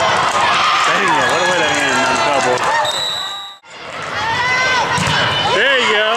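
Sounds of an indoor volleyball match in a gym: players and spectators calling out, with ball hits and bounces. The sound dips out briefly a little past halfway, then resumes.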